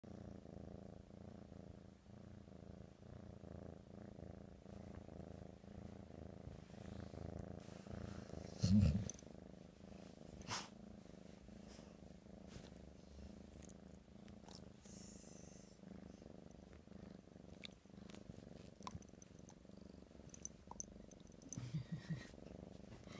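Kitten purring steadily in a low, continuous rumble, with a brief laugh about nine seconds in.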